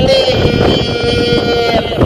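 A man singing a Kannada janapada folk song into a handheld microphone, holding one long steady note that breaks off near the end. Wind rumbles on the microphone beneath the voice.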